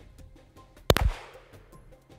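A single handgun shot about a second in, sharp and loud with a short ringing tail, over background music with a light ticking beat.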